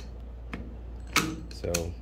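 A few light clicks and one sharper metallic click about a second in, from hand tools being handled on the air file's deck nuts, over a steady low hum.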